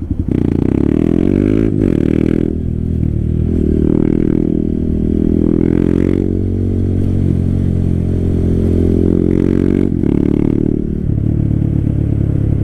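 Motorcycle engine heard from the rider's seat as the bike pulls away and accelerates. The pitch climbs, drops briefly at a few gear changes, then runs steadily at cruising speed.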